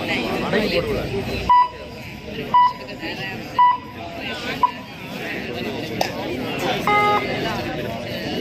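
Four short electronic beeps about a second apart, then a brief two-tone electronic buzz near the end, over the chatter of a crowd.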